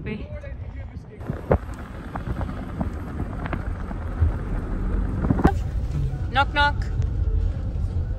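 Car driving on a mountain road, heard from inside the cabin: a steady low rumble of engine and tyres that sets in about a second in, with a couple of sharp clicks and a brief voice about two-thirds of the way through.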